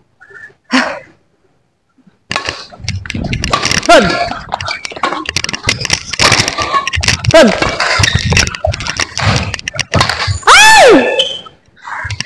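Badminton rally: racquets striking the shuttlecock in quick succession, with shoes scuffing and squeaking on the court floor. There is a short spoken call partway through and a loud falling squeak near the end. The first couple of seconds are nearly silent before play starts.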